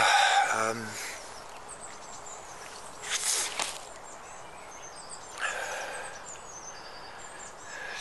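A man's long sigh at the start, then small birds chirping and singing throughout, many short high calls overlapping. Two brief breathy rushes of noise come about three and five and a half seconds in.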